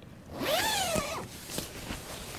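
The zip of a Terra Nova Southern Cross 1 tent's outer door being pulled open in one pull of just under a second, beginning about half a second in, its pitch rising and then falling.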